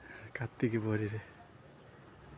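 Insects chirring: a steady, high, finely pulsing drone. A short spoken word cuts in about half a second in and is the loudest sound.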